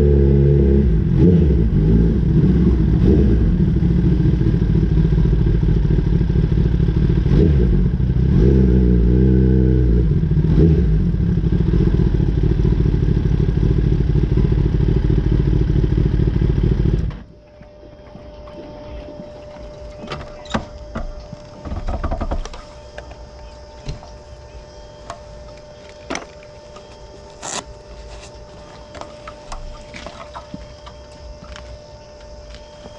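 Kawasaki ZX-10R's inline-four engine running loud, its pitch shifting a few times as the bike rolls to a stop, then cut off suddenly about 17 seconds in. After that comes a quiet stretch of scattered clicks and knocks over a faint steady tone.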